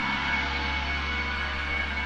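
Experimental drone music: a steady, unchanging mass of sustained tones over a deep low hum, with no beat or attacks.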